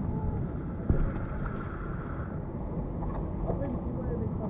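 Wind buffeting the microphone over outdoor street background, with faint voices and one sharp knock about a second in.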